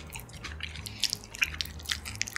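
Close-miked wet, sticky clicks and small squelches, irregular and quick, of sauce-coated black bean noodles and fried egg being worked with chopsticks in a bowl.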